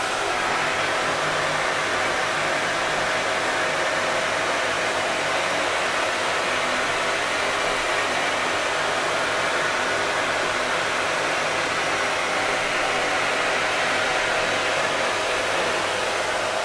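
Vacuum cleaner running steadily: an even rush of air with a faint steady whine under it.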